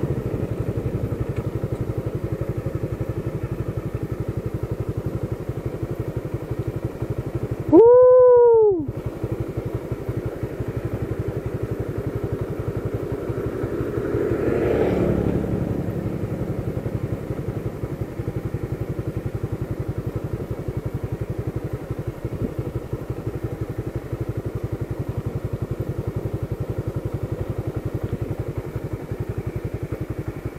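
Motorcycle engine running steadily while being ridden, heard from on the bike. About eight seconds in, a brief loud tone of about a second rises and then falls in pitch, and the engine sound swells briefly around the middle.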